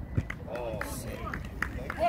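Footballers calling out across the pitch, their voices carried from a distance, over low wind rumble on the microphone, with a few short sharp knocks.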